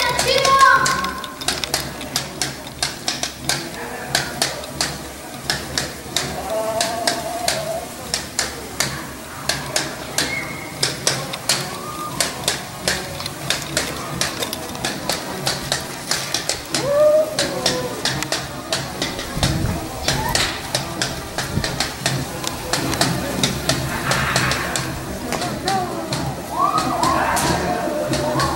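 Percussion keeping a steady beat of sharp strikes, about two or three a second, for a procession of masked street dancers, with voices and calls from the crowd around it.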